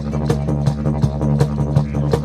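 Long straight didgeridoo played in a continuous low drone, with a fast rhythmic pulse of about five beats a second.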